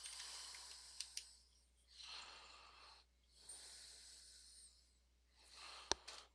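Near silence: faint breathing close to the microphone, coming every second or two, with two soft clicks about a second in.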